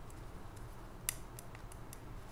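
Knitting needles clicking faintly as stitches are worked, with one sharper click about a second in and a few lighter ticks after it.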